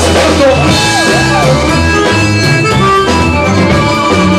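Bayan (Russian button accordion) playing a melodic instrumental passage in held chords and runs, over a live band with a drum kit keeping a steady beat.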